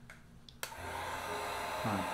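Handheld heat gun switched on a little over half a second in, then blowing steadily over the wet acrylic pour to make the silicone react and open up cells.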